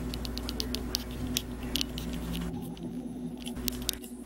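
Light, irregular clicks and taps of objects being handled, several a second at first and again near the end, over a steady low hum.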